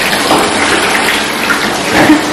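Bathtub filling: water runs steadily from the tap into the tub.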